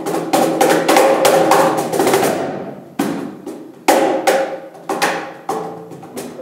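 Marimba and cajón playing together: ringing notes from struck wooden bars over hand slaps on the cajón. A dense run of fast strikes fills the first two seconds, then heavy accented hits land about three and four seconds in, each ringing away.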